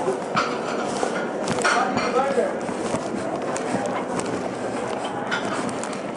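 Indistinct voices, with no clear words, over a steady background hiss, and a few faint clicks or knocks.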